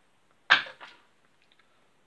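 A flipped coin coming down: a sharp smack about half a second in, then a softer one just after, with a few faint ticks.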